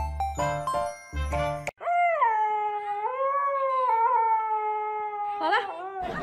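Brief chiming music, then a husky puppy howls one long, slightly wavering note for about four seconds.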